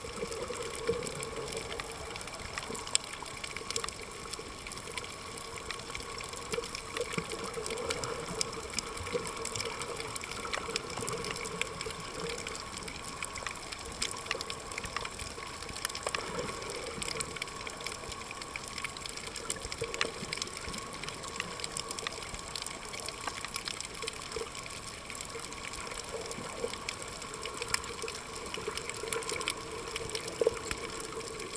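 Underwater sound recorded from a camera under the sea: a steady rush of water with scattered sharp clicks.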